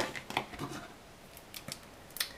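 A few light clicks and taps of small tools being handled on a tabletop: a metal crochet hook set down and scissors picked up.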